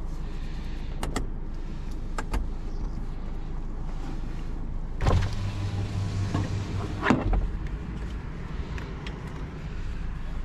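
Car cabin with a steady low hum and a few sharp clicks. About five seconds in, a small electric motor runs with a steady low whirr for about two seconds and stops with a thump.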